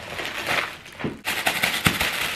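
Plastic packaging, a poly mailer bag and a clear plastic garment bag, crinkling and rustling as it is handled, with a dense run of crackles in the second half.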